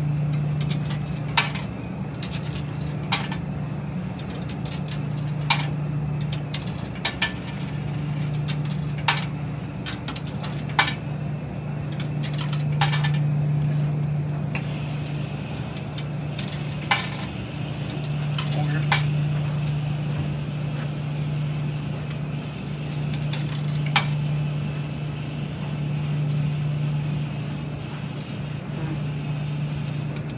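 A steady low hum that swells and eases every few seconds, typical of a running front-loading washer. Over it come sharp plastic clicks and clinks every second or two as the washer's detergent dispenser drawer is handled.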